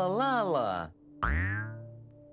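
Playful cartoon sound effects: a warbling tone that bends up and down for about a second, then after a short break a boing that leaps up in pitch and slides down.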